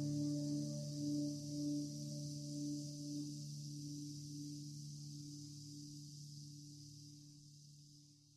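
Electric guitar's final chord ringing out, its tones wavering in a slow pulse over a faint high hiss, fading steadily away as the song ends.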